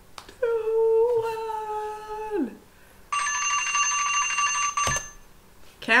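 A woman's drawn-out vocal sound, held for about two seconds and sliding down in pitch at the end. A second later a timer alarm rings for about two seconds to mark the end of the one-minute round, stopping with a click.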